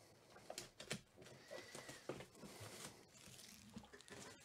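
Plastic shrink wrap being peeled and torn off a cardboard trading-card hobby box: faint crinkling with a few sharp crackles.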